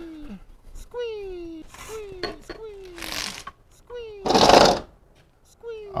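A repeated squealing 'squee' call, a comic creature voice: short squeaky cries that each slide down in pitch, coming about once a second. About three seconds in there is a rushing noise, and about four and a half seconds in a louder one, the loudest sound here.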